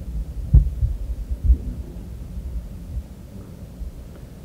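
Low thumps and rumble of a microphone being handled, with one sharper knock about half a second in and another thump a second later.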